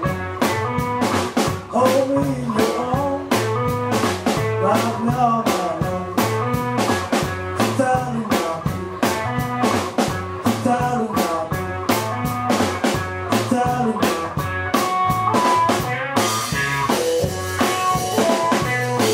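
Live electric blues instrumental: an electric guitar plays lead lines with bent notes over a steady drum-kit beat. Cymbals grow louder near the end.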